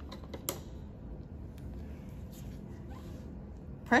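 A few faint plastic clicks as a pH electrode is seated in its holder on the electrode stand, the sharpest about half a second in, over a low steady room hum.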